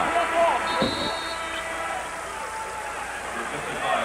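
Basketball arena crowd murmuring during a stoppage in play. A short, high steady tone sounds about a second in.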